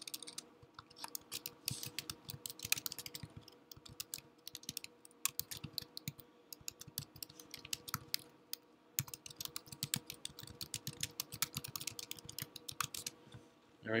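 Typing on a computer keyboard: a fast, irregular run of keystroke clicks with a few short pauses, stopping shortly before the end.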